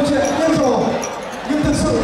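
A man speaking through a handheld microphone and PA, with a brief lull about a second in and occasional low thumps under the voice.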